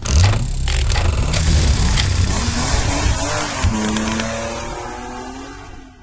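Title-sting sound effect: a sudden hit, then a car engine revving mixed with music, fading out over the last couple of seconds.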